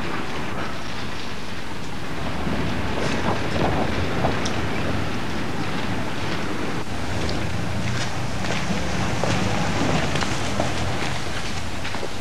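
Steady outdoor street noise: a low rumble with hiss and a few faint clicks.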